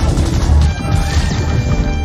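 Movie gunfire: a rapid burst of machine-gun fire with a loud crash about half a second in, over orchestral film score.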